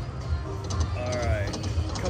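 Konami video slot machine playing its reel-spin music and sounds, over a steady low casino hum.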